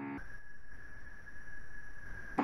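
A brief held hesitation sound from a voice at the very start, then a faint steady high-pitched electronic tone over a low hum on the video-call audio line.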